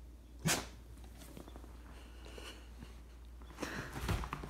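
A dog gives one short, loud huff about half a second in. Faint shuffling follows, getting louder near the end.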